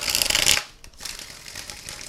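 A Tarot Illuminati deck riffle-shuffled: a rapid run of card flicks for about half a second as the cards cascade together in a bridge, then faint rustling of the deck being handled.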